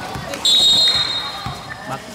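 A referee's whistle blown once, a short, shrill, steady note about half a second in that fades within half a second, over crowd noise and a few basketball bounces on the court.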